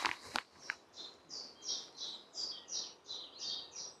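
A songbird in the woods singing a quick series of about ten short, high, repeated notes, roughly three a second, starting about a second in. A few soft clicks come in the first second.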